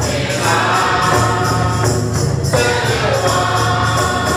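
A church choir of women singing a gospel hymn together, with a tambourine shaken in a steady beat.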